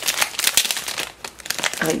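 Clear plastic packaging bag crinkling and crackling as hands pull and pick at it to get it open. The crackling is dense through the first second and sparser after.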